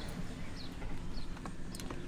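A few faint clicks and knocks from a hand gripping the Hyundai Ioniq 5's plastic sliding centre console at the cup holder, the clearest near the end, over a low steady background rumble.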